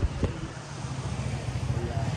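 Steady low hum of a running motor vehicle engine on a street, with two short clicks near the start.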